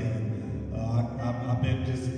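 A man's voice through the PA, half-chanted, over sustained keyboard chords.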